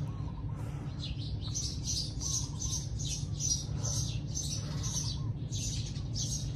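Small birds chirping over and over, two or three short high chirps a second, over a steady low hum.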